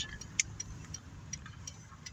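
Car's engine and road noise heard from inside the cabin while driving slowly, a steady low rumble, with a few light ticks, the clearest about half a second in.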